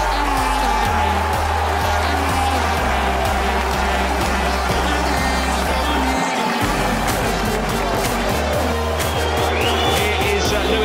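Background music with a steady beat over a deep bass line that changes note every second or so.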